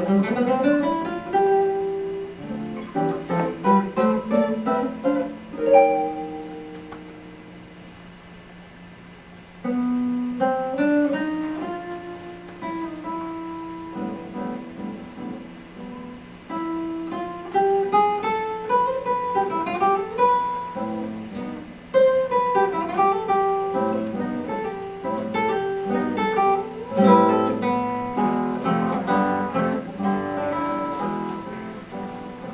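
Solo classical guitar playing a Spanish fandanguillo: quick plucked runs and chords. About six seconds in, a held chord rings and dies away, then the playing comes back loudly, with hard-struck chords later on.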